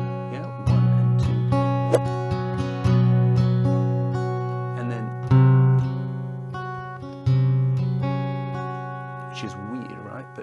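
Acoustic guitar capoed at the second fret, strumming chords: a few strong strums are left to ring and fade, with lighter strums between them, and the loudest comes about five seconds in.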